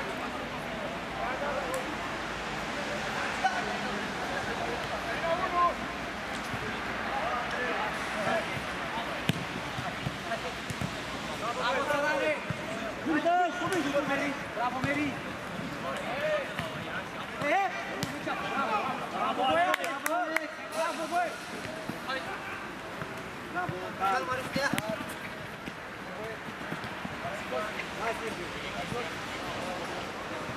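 Players' voices calling and shouting across a small-sided football pitch, with now and then the sharp thud of the ball being kicked.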